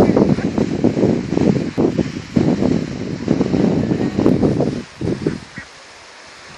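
Wind buffeting the microphone in loud, uneven gusts, easing off near the end.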